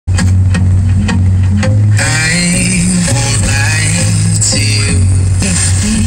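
A pop song with a bass line and beat, a singing voice coming in about two seconds in.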